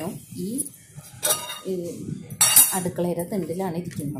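Steel kitchen vessels and a lid clattering and clinking against each other on a countertop as they are handled: a short clatter about a second in and a louder one about halfway through, with a woman's voice between them.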